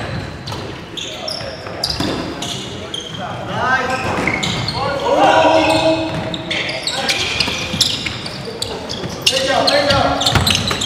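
Live indoor basketball game: a basketball bouncing on a hardwood gym floor with scattered sharp knocks of play, and players' voices calling out, echoing in the large gym, loudest around the middle.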